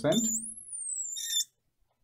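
Marker squeaking on a glass lightboard as it writes: one high squeal that rises and then falls, lasting just over a second and stopping suddenly.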